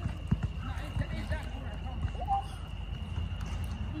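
Water sloshing and slapping in a swimming pool as people wade and move their arms through it, with a few short splashes over a steady low hum.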